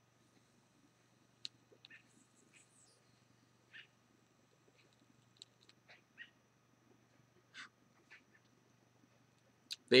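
Faint, short animal squeaks or calls, about a dozen scattered irregularly, over a quiet background with a steady low hum.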